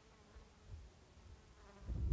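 A flying insect buzzing faintly past the microphone. A low rumble rises near the end.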